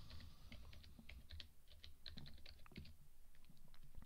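Faint computer keyboard typing: a quick, irregular run of key clicks.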